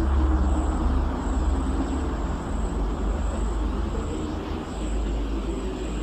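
A steady, low engine-like rumble with a hiss over it, starting abruptly, with a faint high whine running above it.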